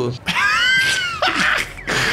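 A person's high-pitched scream, about a second long, rising and then falling in pitch, followed by a short breathy hiss.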